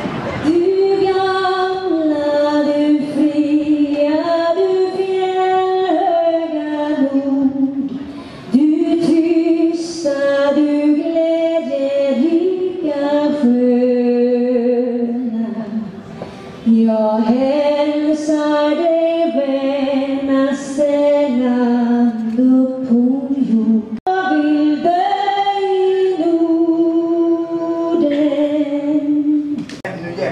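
A woman singing solo into a handheld microphone, long held notes in four phrases with short breaths between them, about every eight seconds.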